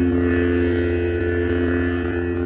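Lightsaber sound effect: the blade's steady electric hum, a low drone of several held tones.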